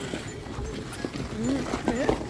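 Footsteps of skates walking over rough, rutted snow, an uneven series of short steps, with people's voices mixed in.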